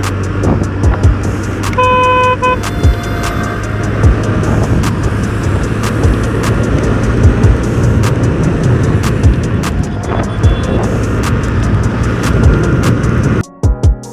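Wind and engine noise of a TVS Ntorq 125 scooter ridden at full throttle at highway speed, with a vehicle horn honking once for under a second about two seconds in. Background music with a beat runs underneath, and the riding noise cuts off suddenly shortly before the end.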